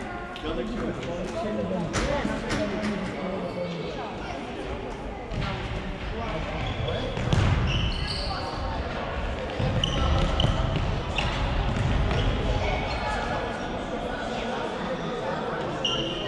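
A football being kicked and bouncing on a wooden sports-hall floor, repeated short thuds, during a children's indoor game, with voices of players and spectators carrying in the large hall.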